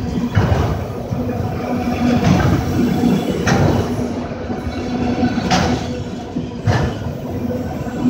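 Autorack cars of a freight train rolling past close by: a steady rumble of steel wheels on rail, with a few sharp clanks.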